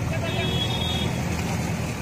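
Street crowd noise: many voices talking at once over steady low traffic noise.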